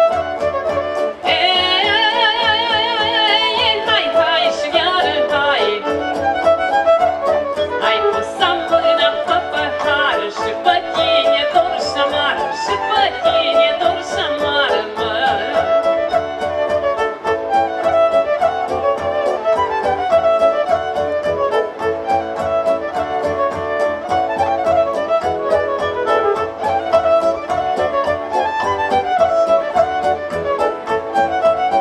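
Live Romanian folk band playing: a violin lead and a woman singing over electric guitar, keyboard and a steady drum beat from a large bass drum and drum kit.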